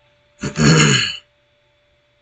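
A man makes one loud, short throaty noise from his throat, lasting just under a second.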